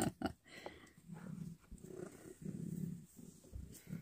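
Domestic cat purring close to the microphone: a low, pulsing rumble in repeated half-second breaths, starting about a second in.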